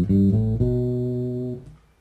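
Fender Jazz Bass electric bass playing the last notes of a B Locrian scale over the B half-diminished chord. It ends on a held note that rings for about a second and dies away.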